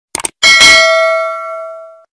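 Subscribe-button animation sound effect: a quick double mouse click, then a single notification-bell ding that rings out and fades over about a second and a half.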